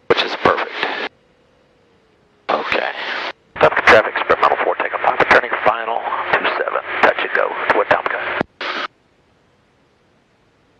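Voice transmissions over an aircraft radio heard through a headset intercom: several bursts of speech that switch on and cut off abruptly, with a faint steady hum in the gaps.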